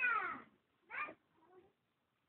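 Three short high-pitched cries like meows: a loud one falling in pitch, a shorter one about a second in, and a faint one soon after.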